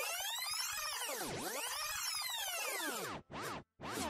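Electronic transition sound effect: a synthesized sweep that glides up and down in pitch in arcs for about three seconds, followed by two short sweeps near the end, then cuts off.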